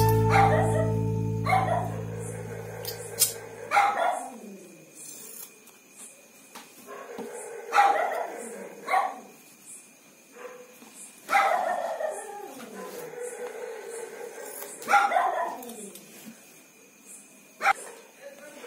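A dog barking, about a dozen short barks singly and in pairs a second to a few seconds apart. Acoustic guitar music fades out over the first few seconds.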